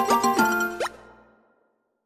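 Short musical outro sting of bright pitched notes with several quick upward-sliding plops, fading out about a second and a half in.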